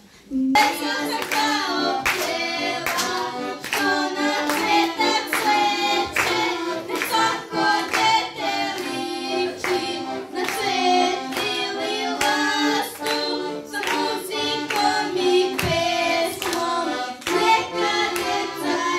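Children singing a song to accordion accompaniment, with hands clapping along in a steady beat about twice a second.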